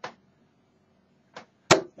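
A 24 g tungsten steel-tip dart strikes a dartboard with a sharp thud near the end, just after a fainter tick.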